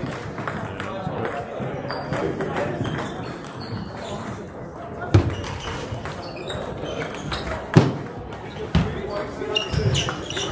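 Table tennis ball clacking off bats and the table in a rally, sharp single strikes about a second apart in the second half, over a steady murmur of voices in a sports hall.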